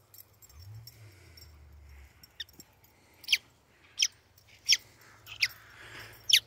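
A dog chewing a squeaky toy ball, sounding short high squeaks that slide down in pitch, about one every 0.7 seconds from about three seconds in.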